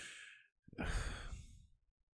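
A man exhaling close to the microphone after a drag on a joint. A short trailing breath comes first, then one long breathy exhale lasting about a second.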